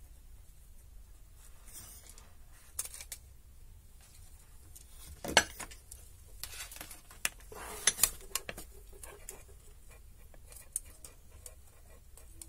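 Small electronic parts and wires being handled on a cluttered workbench: scattered clicks, knocks and light rattles. The loudest knock comes about five seconds in, with a busy cluster of clicks around eight seconds.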